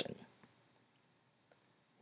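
Near silence: quiet room tone with one faint click about one and a half seconds in.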